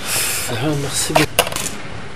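Glass bottles on a serving tray clinking twice, sharply, a little over a second in, with a short hum-like vocal sound just before.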